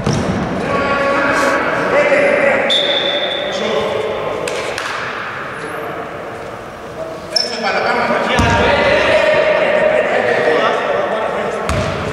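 Basketball court sounds in a large gym: a ball bouncing on the wooden floor, players' voices, and a referee's whistle held for about a second early on, stopping play for a foul call. Sharp thuds come later.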